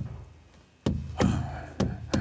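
Large hide-headed frame drum, Native American style, struck by hand: three beats about a second in, the last two close together, each leaving a low ringing boom that fades.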